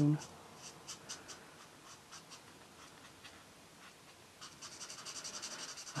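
Felt-tip art marker scribbling on a colouring book page: a few faint strokes at first, then a quick run of short back-and-forth strokes, about ten a second, in the last second and a half.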